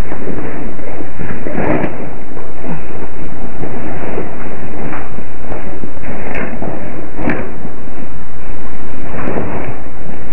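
Loud, steady hiss from a security camera's built-in microphone, with a few short knocks and thuds scattered through it as a person moves about close to the camera.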